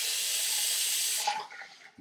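A steady hiss of water that stops a little past halfway.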